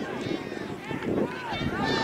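Distant, overlapping shouts and calls from soccer players and sideline spectators, with no clear words, over steady outdoor background noise.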